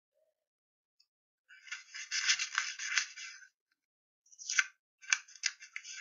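Cut coloured paper rustling and sliding over a cardboard base as the pieces are handled and arranged. There is one longer burst about two seconds in, then several short ones near the end.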